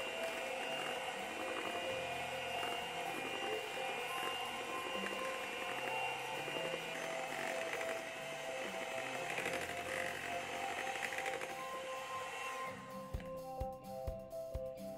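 Background music with held notes, and beneath it a Panasonic MK-GB1 electric hand mixer whirring as its beaters work through thick chocolate cake batter; the mixer stops near the end.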